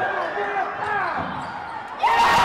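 Live sound of a high school basketball game in a gym: spectators' voices and shouts, with a basketball bouncing on the court.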